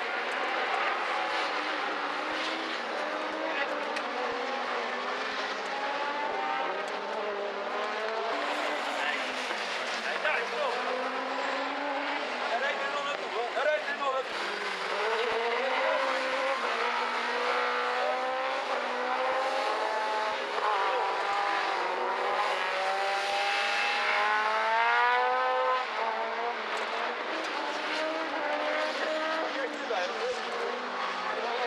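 Several rallycross buggy engines racing, revving high through the gears, the pitch climbing and dropping back again and again as they accelerate out of corners and pass. The longest, loudest climb comes about three-quarters of the way through and then breaks off.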